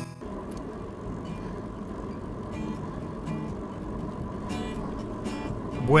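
Acoustic guitar music cuts off right at the start. It gives way to a steady rush of wind and tyre noise from a bicycle rolling along a paved road.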